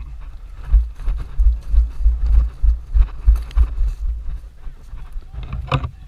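Quick footsteps jolting a head-mounted camera: a dull thump about three times a second that eases off about four seconds in, with brush rustling against clothing and gear near the end.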